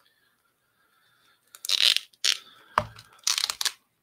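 A white paper mailer being torn open and handled: a run of quick rasping rips and rustles starts about a second and a half in, with a short knock in the middle.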